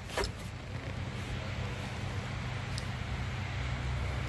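A short knock of the Volkswagen generator's metal housing being turned over in the hands, just after the start, then a faint tick near three seconds as a brush spring is worked into place. All of this sits over a steady low machine hum.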